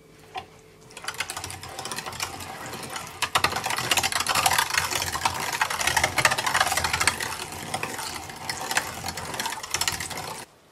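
Hand-cranked metal meat grinder being turned, a fast, steady rattling grind of the auger and cutter as raw meat is minced. It starts about a second in, after a single knock, and stops abruptly at the end.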